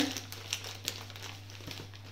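Scissors snipping into a white packaging mailer, the packaging crinkling and rustling in scattered short clicks.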